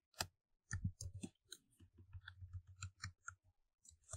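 Faint computer keyboard keystrokes: a run of quick, irregular taps.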